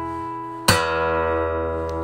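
Acoustic guitar: a strummed chord ringing and fading, then one more chord strummed about two-thirds of a second in and left to ring out, the closing chords of the song.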